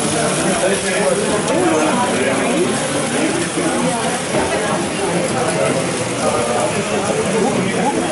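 Voices talking in the background over the mechanical rattle of two Biller No. 13 tinplate toy locomotives running their trains over tinplate track.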